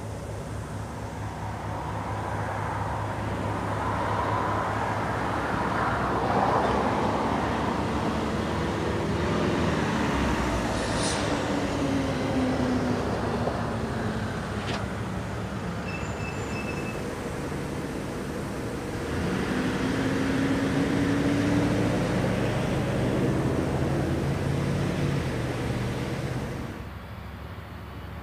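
Road traffic going past close by: a steady roar swelling twice as vehicles pass, once a few seconds in and again about two-thirds of the way through, each with an engine hum that slides in pitch as it goes by. The sound drops away suddenly near the end.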